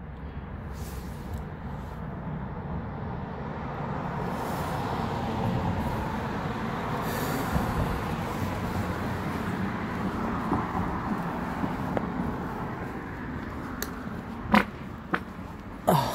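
A car passing on the road, its tyre and engine noise swelling over several seconds and fading away, with a couple of sharp clicks near the end.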